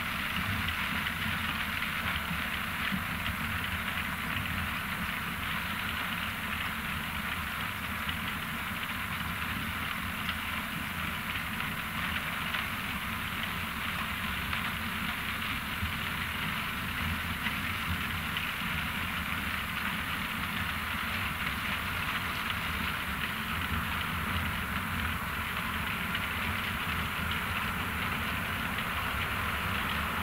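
ROPA Maus 5 sugar-beet cleaner-loader running steadily while loading, its diesel engine under a dense, continuous clatter of beets passing over the cleaning rollers and up the loading conveyor.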